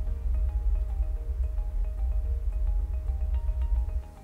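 Subwoofer playing the Audyssey calibration test noise, a steady deep bass noise that cuts off at the end; the receiver judges this subwoofer level too high. Light mallet-percussion background music plays under it.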